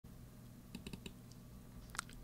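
A few faint computer keyboard clicks: four quick ones about three-quarters of a second in, then another near the end, over a faint low hum.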